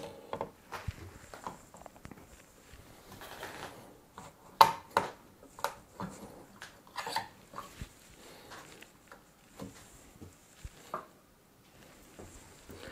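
Irregular clicks, knocks and scrapes of plastic and metal as a down-draught CPU cooler is set onto the motherboard and its spring clips are worked onto the socket's mounting brackets. The sharpest knock comes about halfway through.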